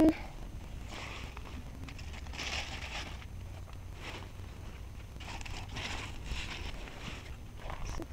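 Soft rustling and scuffing as a person moves through a patch of squash plants, coming in several brief patches, over a low steady rumble on the microphone.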